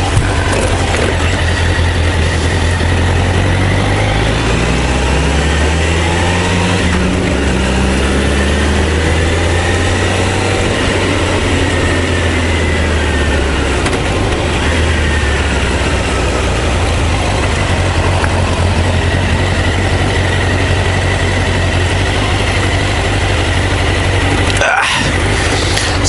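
Honda CBR1000F inline-four motorcycle engine pulling away and rising in pitch as it accelerates a few seconds in, then running steadily, with wind rushing over the helmet-mounted microphone. The engine note drops away near the end as the bike slows.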